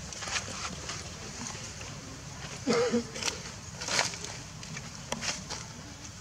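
Outdoor background with indistinct voices and a few short, sharp rustling or tapping noises scattered through it. One brief voiced sound, gliding in pitch, comes near the middle and is the loudest moment.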